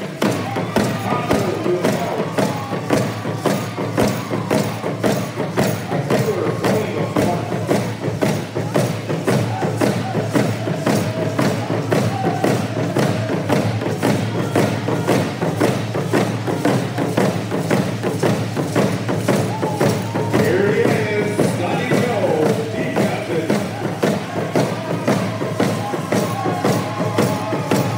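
A group of rawhide hand drums beaten in unison in a steady, even beat, a little over two strokes a second, with voices singing a hand-game song over it.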